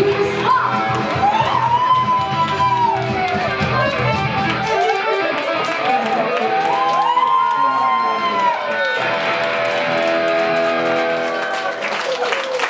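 Live band with electric guitar and keyboard playing the outro of a song, with a female voice in the first seconds. The bass drops out about five seconds in, and the band ends on a held chord.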